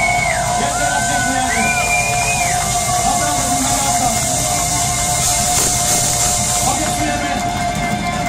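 Heavy metal band playing live in a club, loud, over a steady held tone. In the first few seconds long high notes bend up and down in pitch.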